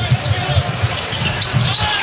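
Basketball being dribbled on a hardwood court, its bounces repeating as a player brings it up the floor, over arena crowd noise.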